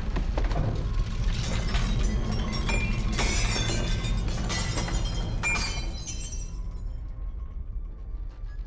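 Earthquake tremor: a deep rumble with things rattling and glass shattering. The crashes and rattling die away about six seconds in, leaving the low rumble.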